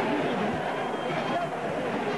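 Large crowd of football fans celebrating on the pitch: many voices chattering and shouting at once in a steady din, with laughter.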